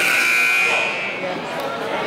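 A high, steady signal tone sounds for about a second, then cuts off. It is a game-stoppage signal in a basketball gym, heard over people talking.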